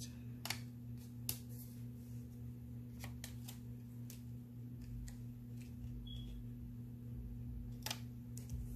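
Scattered small clicks and light paper handling as metal tweezers place a paper sticker on a planner page and it is pressed down, the sharpest click near the end, over a steady low electrical hum.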